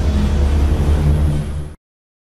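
Sound design of a TV station's animated logo sting: a loud, steady deep rumble under a hissing wash, cutting off suddenly near the end and leaving silence.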